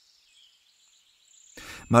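A pause in a man's audiobook narration: near silence with only a faint high hiss. Near the end there is a short breath-like sound, and then his reading voice begins.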